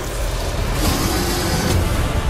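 Film-trailer sound design: a loud, dense low rumble with a hiss that swells about a second in and a short hit near the end, mixed with music.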